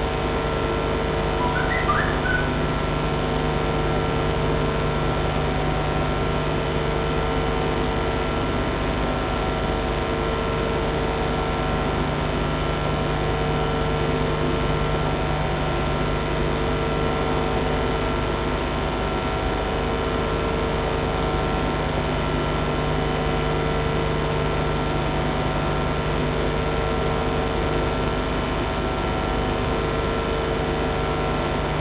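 Steady hum of room air conditioning, with several fixed tones and a thin high whine, unchanging throughout. A brief faint chirp about two seconds in.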